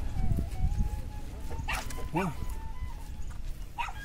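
A dog barking a few short times, about two seconds in and again near the end, over a low rumble that is loudest in the first second.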